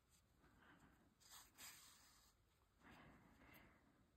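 Near silence, with a couple of faint soft rustles as yarn is drawn by hand through knitted fabric with a tapestry needle.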